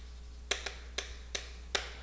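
Chalk clicking against a chalkboard as words are written: about five short, sharp taps at irregular spacing, over a low steady hum.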